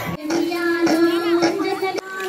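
Women's voices singing a Bathukamma folk song, one high voice holding a long note for over a second. The sound cuts in abruptly just after the start and breaks off at the end.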